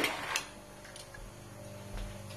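Light clicks from slatted window blinds being handled: two sharp ones in the first half-second and a fainter one about a second in, over a low steady room hum.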